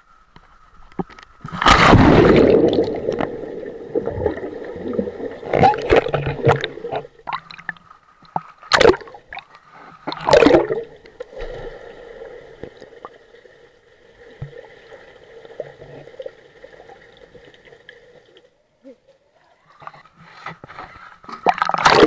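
Underwater sound of people plunging into a swimming pool, picked up by an action camera under the water: a loud rush of splashing and bubbling about two seconds in, sharp splashes near nine and ten seconds, and another plunge at the end. A faint steady underwater hum runs beneath.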